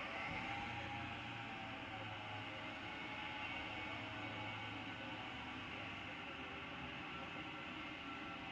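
Steady background hum and hiss of an indoor ice rink, with no distinct events; a low hum is stronger in the first half.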